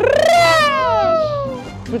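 A long cat-like meow that rises sharply at the start, then slides down in pitch for about a second and a half.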